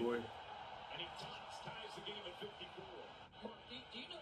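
Faint male speech, like basketball broadcast commentary playing under the reaction, after a last louder word at the start.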